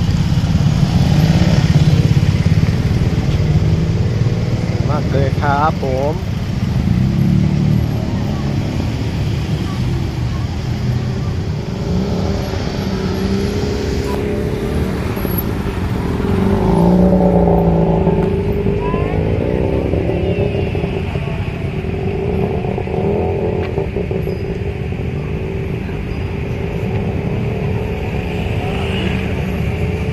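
Busy street crowd and traffic: a steady rumble of motorcycles and cars with people talking over it, and a voice speaking briefly about five seconds in.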